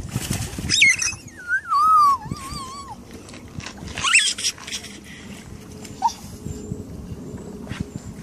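A Staffordshire bull terrier whining in high, sliding, wavering tones: a long falling whine starts about a second in and lasts about two seconds, with a rising one about four seconds in. There is splashing water at the very start.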